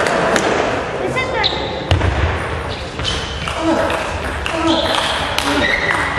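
Table tennis rally: the ball clicking sharply off bats and table in an irregular series, over a background of voices in the hall.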